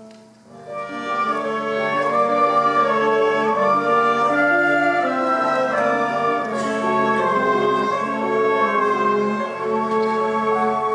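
Pit orchestra playing instrumental underscore. It dips briefly just after the start, then swells about a second in and holds with sustained, overlapping notes.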